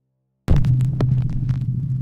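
Production-logo sound effect: after a moment of silence, a loud low electrical hum starts suddenly about half a second in, with crackling static clicks over it.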